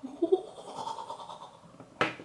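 A woman giggling softly, a high, wavering delighted squeal of excitement.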